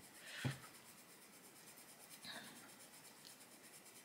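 Faint scratching of a coloured pencil on paper, worked in small circular strokes, a little louder in the first half second and again about two seconds in.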